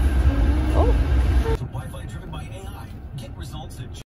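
Low rumble inside a car cabin with a puppy's yawning whine that rises sharply in pitch just under a second in. After a sudden change about 1.5 s in, quieter cabin sound with a few light clicks from handling a plastic drink cup.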